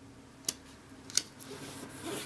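Paper handling: two small sharp clicks, then a soft rustle as hands press and smooth a stamped cardstock panel down onto a larger piece of cardstock.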